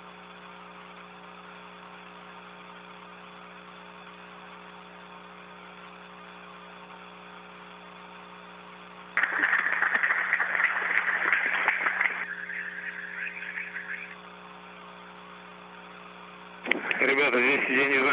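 Audience applause, described as loud, breaks out suddenly about halfway through over a steady hum and hiss. It is strong for a few seconds, then thins out and stops. A man starts speaking near the end.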